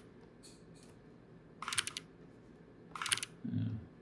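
Computer keyboard keys clicking in two short clatters about a second and a half apart, as the Command-Z undo shortcut is pressed. A short low sound follows just after the second clatter.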